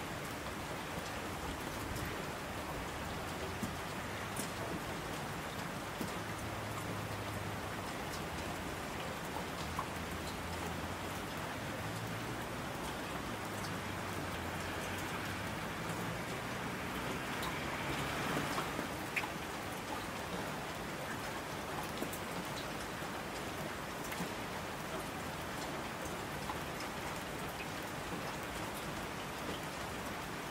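Steady rain falling, a dense even hiss with scattered sharper drop ticks. A low rumble runs underneath through the middle, and the rain swells briefly about two-thirds of the way through.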